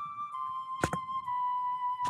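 Background music: a slow flute melody of long held notes. A pair of sharp knocks falls a little under a second in.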